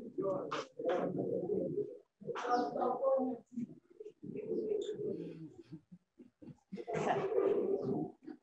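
Indistinct voices in a hall full of students, heard over a video-call link, coming in choppy bursts of about a second each with short gaps between them.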